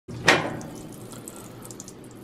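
Top-loading washing machine lid lifted with a sharp clunk about a quarter second in, followed by a steady hiss of water running into the washer tub.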